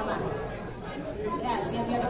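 Many people talking at once: overlapping conversation from a crowd of guests in a hall, with no single voice standing out.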